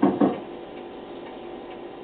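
A quick run of knocks, about five a second, that stops just after the start, then a clock ticking in a quiet room.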